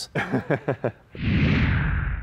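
A man chuckles briefly. About a second in, a loud whoosh with a deep rumble under it sweeps in, its hiss falling in pitch as it fades.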